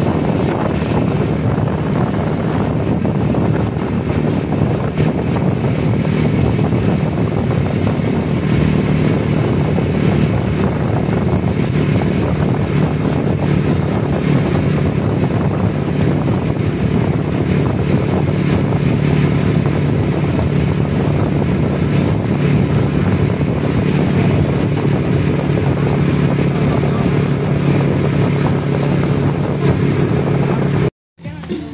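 Steady engine drone and road noise of a moving vehicle, heard from on board, unchanging throughout.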